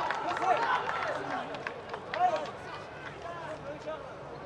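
Several voices shouting and calling out over one another in celebration of a goal, with one louder shout about two seconds in, the noise dying down over the seconds.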